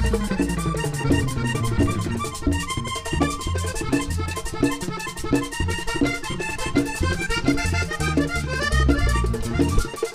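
Live vallenato band playing an instrumental passage led by a button accordion. A bass line and an even percussion beat run underneath.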